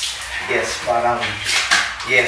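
Dishes and cutlery clattering, with a few sharp clinks.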